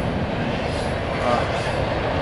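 Double-stack intermodal freight train rolling past on a steel girder bridge: a steady noise of cars and wheels on the rails.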